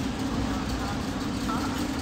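Shopping cart rolling across a warehouse store's concrete floor: a steady low rumble with a steady hum over it. Faint voices come in briefly about halfway through.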